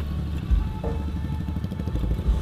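Motor scooter engine running at low road speed, with wind buffeting the helmet microphone and music playing underneath.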